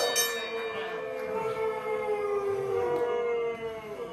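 Several voices holding one long, howl-like call that drifts slowly down in pitch.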